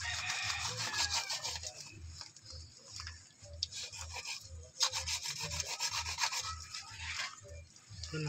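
A large knife sawing back and forth through a blue marlin's head, its blade rasping on the tough skin and bone in repeated strokes, with a short pause a little past the middle.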